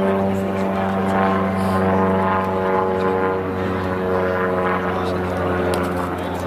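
A steady engine drone: a low, even hum with a stack of higher overtones that holds one pitch throughout.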